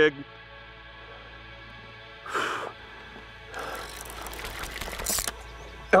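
A hooked freshwater drum being reeled in to the bank on a spinning reel. There is a short noisy burst about two seconds in, then a longer noisy stretch that builds from about three and a half seconds and peaks near the end, as the line is wound in and the fish nears the surface.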